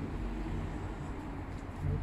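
A steady low outdoor background rumble with no distinct events, and a short spoken word near the end.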